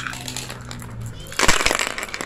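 Glass marbles clattering against a wooden congklak board: a single click at the start, then a dense half-second rattle about one and a half seconds in.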